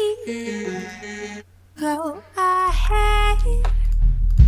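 The vocal stem of an electronic track, pulled out in real time by a stem-separation plugin. Sung phrases with a reverb tail ring on between them. About two-thirds of the way in, a deep steady bass comes in under the voice.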